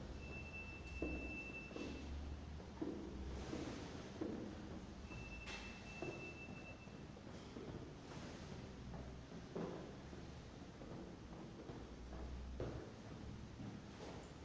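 Footsteps on the stone floor of a metro station entrance passage, with two long, steady high-pitched beeps, one near the start and one about five seconds in, each lasting about a second and a half, over a low hum.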